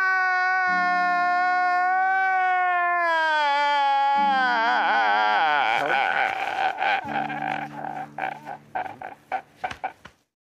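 A man's long, high-pitched wailing cry, held for about four seconds, then wavering and breaking into a run of short sobbing gasps through the second half. Steady low tones sound underneath and shift a few times.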